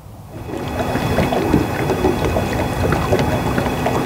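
Wind buffeting the microphone and water rushing around a small sailboat under way, with a few faint steady tones over the noise. It swells in over the first second and then holds steady.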